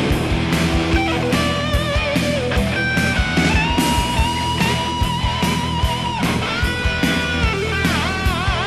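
Heavy metal band recording in an instrumental passage: an electric guitar lead plays long held notes over a steady drum beat, with a long sustained note in the middle and wavering vibrato near the end.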